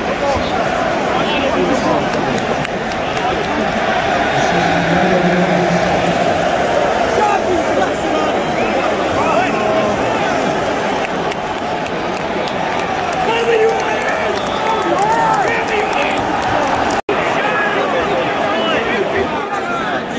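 Large football stadium crowd: a loud, continuous hubbub of thousands of voices, with individual shouts rising out of it, while a goal is checked and ruled out for offside. The sound cuts out for an instant near the end.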